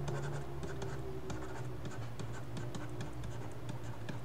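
A stylus writing by hand on a tablet surface: a quick, irregular run of small scratches and ticks as the letters are drawn, over a low steady hum.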